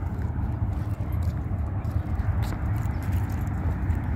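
Wind rumbling and buffeting on the microphone while walking outdoors, with footsteps on asphalt pavement.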